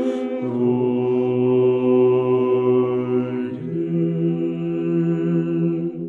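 Orthodox liturgical chant: several voices singing unaccompanied in slow, long-held chords. A low bass note comes in about half a second in and steps up to a higher note about three and a half seconds in, and the singing fades away at the end.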